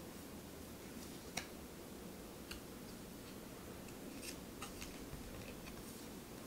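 Tarot cards handled in the hand as each card is slid to the back of the deck: a few soft clicks and flicks of card stock, the sharpest about a second and a half in, over a quiet room.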